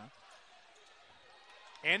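Faint arena ambience during live basketball play: low, even crowd and court noise with no distinct impacts. A man's commentary starts near the end.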